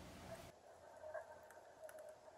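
Near silence: faint room tone, with two faint short ticks about a second and nearly two seconds in.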